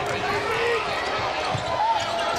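Basketball dribbled on a hardwood court during live play, with short squeaks of sneakers over background crowd noise in a large arena.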